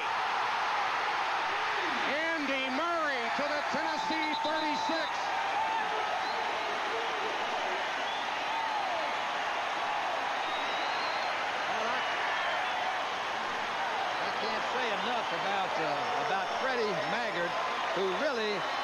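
Large stadium crowd cheering through a long gain by the home team: a steady wall of voices with individual shouts standing out.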